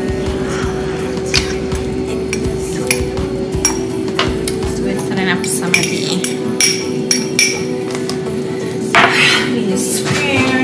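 A metal fork clinking and scraping against a plastic container and a bowl as pico de gallo is scooped out, with several sharp ringing clinks in the second half. Background music with a held tone plays underneath.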